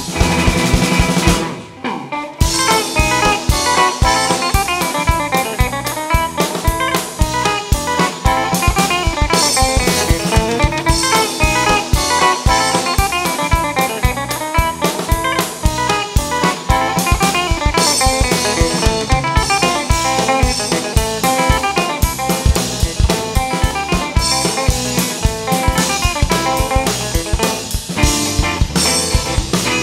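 Live rock band playing an instrumental on electric guitar, bass and drum kit, with busy electric guitar lines over steady drumming. The band drops back briefly just before two seconds in, then comes straight back in.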